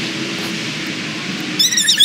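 Steady outdoor hiss with a faint low hum, then a short high-pitched chirping call with quickly repeated pitch flicks near the end.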